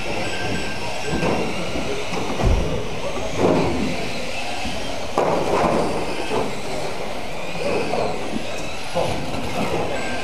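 Several electric mini-class RC cars racing on a carpet track: the steady whine of their motors and gears over tyre noise, with a few louder bursts about two and a half, three and a half and five seconds in.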